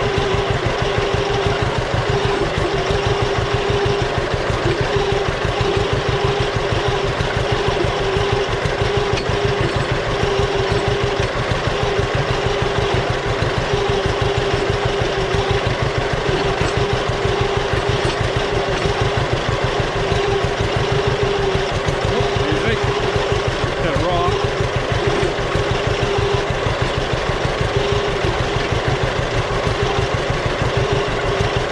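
John Deere B tractor's two-cylinder engine running steadily under load, with its even beat, while pulling a cultivator in first gear through soil. A steady higher tone rides over the beat throughout.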